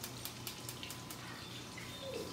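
Food frying in hot oil in pans, a steady sizzle flecked with fine crackles.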